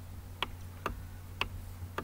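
Four sharp, short clicks at uneven intervals about half a second apart, from a computer mouse being clicked while annotations are drawn on screen, over a steady low electrical hum.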